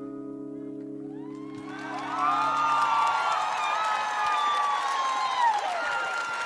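The band's final held chord at the end of the song fades out. About two seconds in, a large concert audience breaks into loud cheering, whooping and applause, which carries on.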